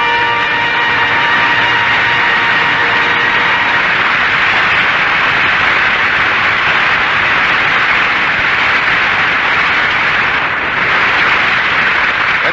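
An orchestral closing chord is held for the first few seconds and then gives way to steady, loud studio-audience applause that runs on until the announcer comes back.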